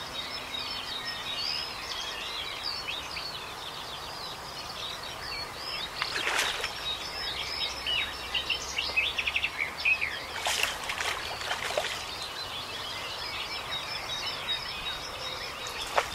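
Several birds chirping and trilling together in a continuous dawn-chorus-like chatter, with a few brief rushing noises about six seconds in and again around ten to twelve seconds.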